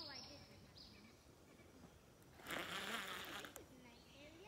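A cast with a baitcasting reel: a hissing whir of about a second as the spool spins and line pays out, in the second half.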